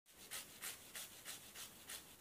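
Faint rasping strokes of fresh ginger rubbed back and forth over a small fine metal grater, six strokes at about three a second.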